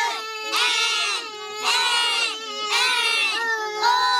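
A group of young children singing together in unison, in short held phrases that repeat about once a second.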